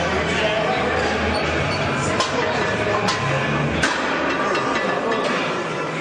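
Gym background: indistinct voices and music over a steady din, with two sharp knocks about two seconds and four seconds in.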